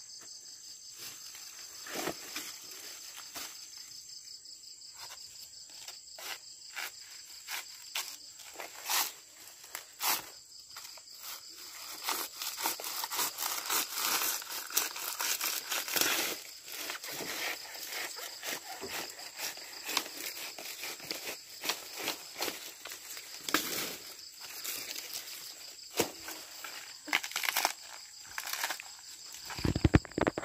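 A blade chopping into a banana plant's soft, fibrous trunk: irregular knocks, some single and some in quick runs, with rustling and tearing of banana leaves and stalk sheaths. Insects chirr steadily in the background.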